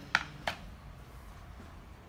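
Two short, sharp clicks about a third of a second apart near the start, from the vacuum suction lifter's spare seal and plastic parts being handled on a counter, then faint room tone.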